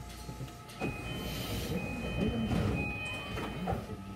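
Train standing at a station: a steady low hum with high electronic tones that sound on and off for a couple of seconds, and a faint voice in the background.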